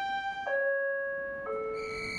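A short chime-like melody of held electronic tones, each note clear and steady, stepping down in pitch three times, with a higher note coming in near the end.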